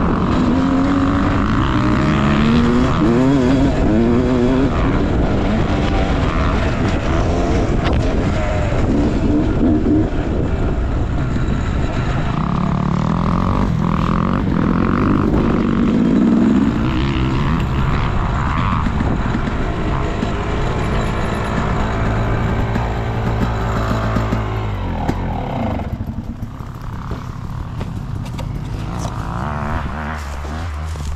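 Dirt bike engine heard close up from the rider's helmet, revving up and down as it is ridden across rough ground. Near the end it slows and settles to a steady low idle.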